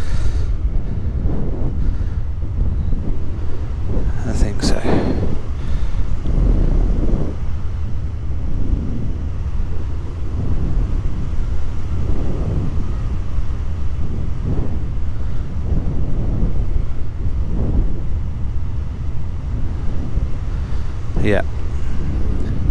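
Wind rushing over the microphone of a paramotor gliding with its engine out: a loud, steady low rumble of airflow with no motor running. A brief sharper noise comes about four and a half seconds in.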